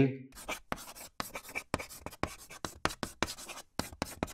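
Chalk writing on a blackboard: a quick, irregular run of short scratching strokes.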